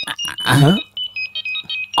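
Mobile phone ringtone: a quick melody of short electronic beeps that starts about a second in, after a brief spoken word.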